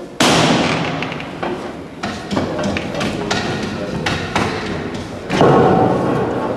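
A heavy thud just after the start with a long echoing tail, then scattered knocks and a second loud thud near the end: a wooden Holy Week processional float being lifted and carried by its bearers.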